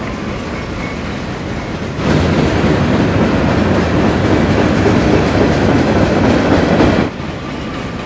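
Freight train of enclosed autorack cars rolling past on the track, a steady noise of wheels on rails. It is quieter at first, louder from about two seconds in, and drops back down about a second before the end.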